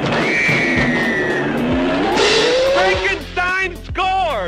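Movie-soundtrack car tire squeal: a long, high screech that falls slightly in pitch over about a second and a half, over music. It is followed by a rising tone, and a voice speaks near the end.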